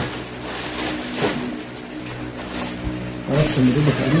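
A steady low mechanical hum runs throughout, with faint rustling as a waterproof jacket is handled. A voice is heard briefly near the end.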